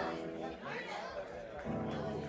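Audience chatter in a bar between songs, with stray notes from the band's instruments and a low held note coming in near the end.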